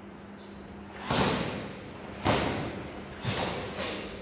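Four sudden sharp sounds, the first two about a second apart and the last two close together near the end, each trailing off with a short echo: karate uniforms snapping and bodies landing on foam mats as three kata performers move in unison and drop to kneel.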